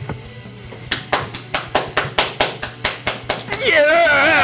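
A quick, even run of about a dozen hand claps, roughly five a second, then a loud drawn-out yell near the end.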